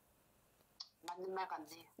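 A near-quiet pause broken by a single small click just under a second in, then a woman's soft voice for the rest of the pause.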